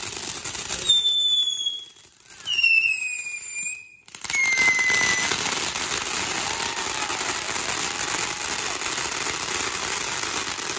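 Ground fountain firework spraying sparks with a steady hissing crackle. Three whistles, each sliding slightly down in pitch and each lower than the last, cut through it between about one and five seconds in.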